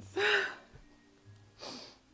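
A woman's short, breathy voiced exclamation, then an audible breath out about a second and a half later, over faint background music.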